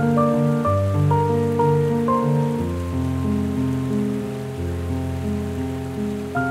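Slow, solemn solo piano music with a resonant, reverberant sound. Deep bass notes ring for one to two seconds each beneath held chords, while higher notes change about every half second.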